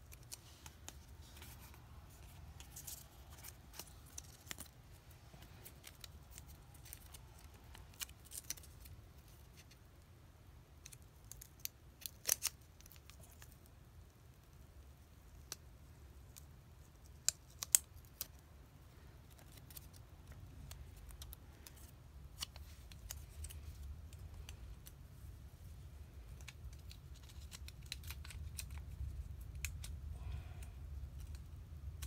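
Quiet handling of a stamp album and its plastic stamp mounts: scattered light clicks and rustles, with a few sharper clicks in the middle, over a low rumble that grows toward the end.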